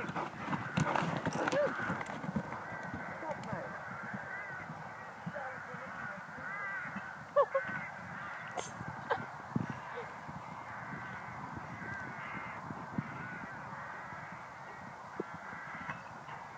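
A flock of birds calling over and over, short rising-and-falling calls, one louder than the rest about seven seconds in, over the soft thuds of a horse cantering on a sand arena.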